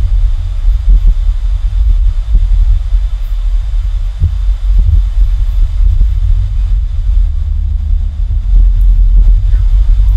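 Steady low rumble of background noise, with a few faint soft knocks.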